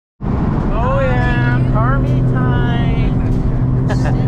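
Car engine running steadily at cruising speed, heard from inside the cabin, with a person's voice over it.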